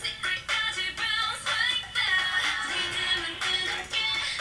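K-pop girl-group dance-pop song playing: processed female vocals over a steady, rhythmic electronic beat.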